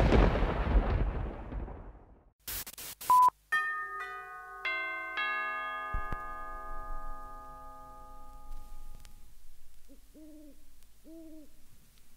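A deep boom fades out at the close of the intro music. A short beep follows, then a run of five chime notes struck one after another, each ringing on for several seconds. Near the end come two short owl-like hoots.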